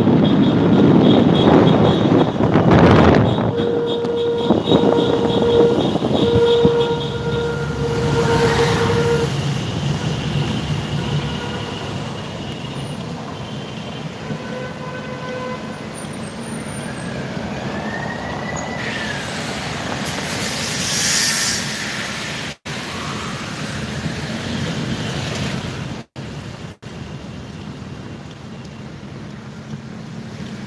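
Car horns in a motorcade honking in a run of short toots a few seconds in, over the steady noise of traffic and car engines on a cobblestone street. The sound cuts out briefly a few times near the end.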